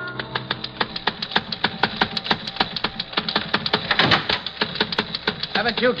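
Teletype machine clattering as a radio-drama sound effect: a steady run of sharp mechanical clicks, about six a second.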